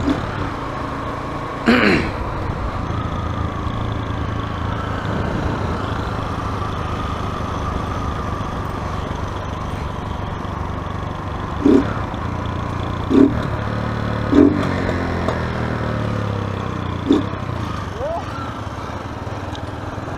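Small motorcycle engine running steadily while riding, with wind noise on the helmet-mounted microphone. Its note falls slowly over the first few seconds.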